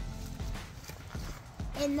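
Soft, irregular knocks and rustling from the camera being handled close among the leaves, over a low rumble.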